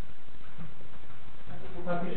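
Faint voices talking over the steady hiss of a low-quality recording; the speech grows clearer near the end.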